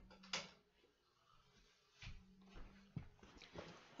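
Faint sounds of a person moving about a room: a sharp click about a third of a second in as a light is switched on, then a few soft knocks and a faint low hum, and movement near the end as she sits back down on the couch.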